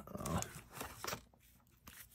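Faint rustling and a few light clicks of baseball cards and a paper-wrapped card pack being handled on a tabletop, falling almost silent about halfway through.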